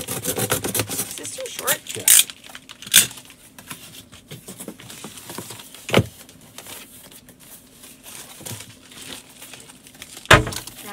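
Corrugated cardboard being scored and cut with a utility knife, a quick run of rasping strokes over the first couple of seconds, then cardboard being folded and handled with crinkling and rustling. A single sharp knock about six seconds in.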